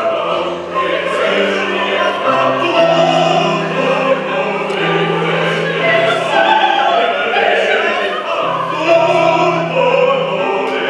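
Several voices singing an opera ensemble in long held notes over a low line that steps between pitches, without a break.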